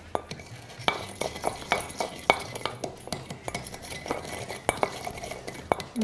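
A muddler crushing a brown sugar cube with bitters and a splash of soda in a metal mixing tin: irregular sharp clicks and scrapes of the muddler against the metal.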